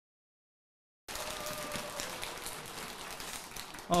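Dead silence for about a second, then the steady hiss and light rustling and clicking of a large hall full of seated listeners.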